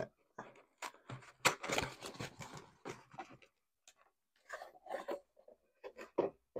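A cardboard shipping box being opened and handled by hand: a busy run of rustles, scrapes and light taps over the first three seconds or so, then a few softer handling sounds near the end.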